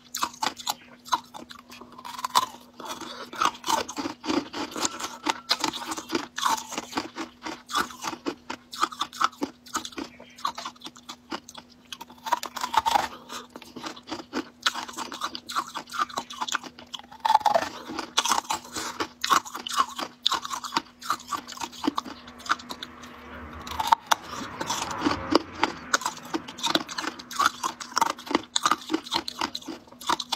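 Crunching and chewing of coloured ice: a dense run of crisp cracks and chews. A faint steady low hum runs underneath.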